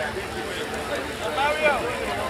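People talking at once, voices overlapping, with one louder voice about a second and a half in.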